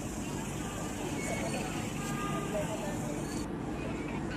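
Street sound: several people talking in the background over steady traffic noise around a parked van. The sound changes abruptly near the end, as at a cut.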